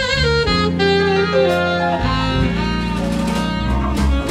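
Live jazz combo playing the instrumental introduction to a ballad: alto saxophone carrying the melody over bass, drums, guitar and keyboard accompaniment.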